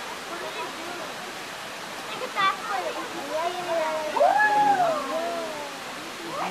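Zoo visitors' voices chattering over a steady rushing background noise. One voice rises and falls loudly about four seconds in.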